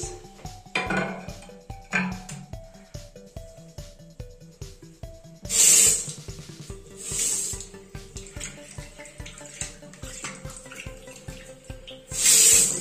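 A hard cover piece clinks against the porcelain-tile countertop, then the tap is opened in short bursts, water gushing at strong pressure into the porcelain sink, loudest just past halfway and again at the very end. Soft background music plays underneath.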